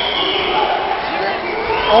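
Indistinct voices of spectators and people around the mat talking at once, with no clear words and no single loud sound standing out.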